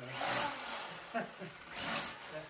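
Tools scraping on loose stone and plaster rubble during demolition work: two short scrapes, one near the start and one near the end, with faint voices in the background.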